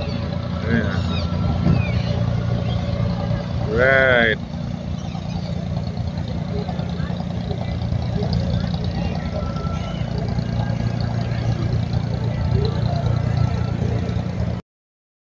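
Steady low engine hum of a wooden abra water taxi motoring past, with voices in the background. About four seconds in, a brief loud shout rises over it.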